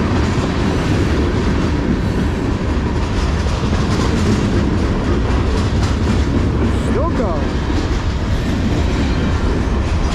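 Freight cars of a long CSX manifest train rolling past close by: a steady, loud rumble of steel wheels on the rails. A brief falling squeal is heard about seven seconds in.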